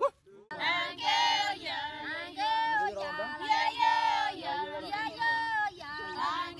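A group of Maasai women singing together in high voices, holding long notes in a chanting song. The singing starts about half a second in, after a brief silent gap with a click.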